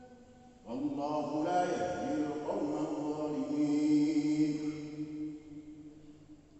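A man's voice chanting one long, melodic Arabic phrase over a mosque loudspeaker system, starting a little under a second in and fading out near the end.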